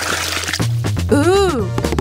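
Background music with a steady low bass line. It opens with a short liquid swoosh sound effect, and a brief voice-like sound rises and falls about a second in.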